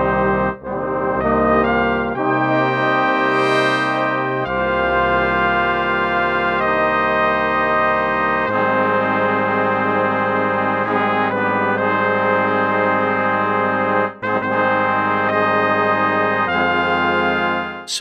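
Sampled jazz horn section from Impact Soundworks' Straight Ahead Jazz Horns playing held ensemble chords live from a keyboard. The library's script voices each left-hand triad across the trumpets and trombones. The chords change every second or two at first, then hold for several seconds, with a brief break about 14 seconds in.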